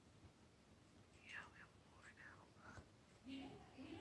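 A woman whispering faintly close to the microphone over near silence, with a short low murmur of voice near the end.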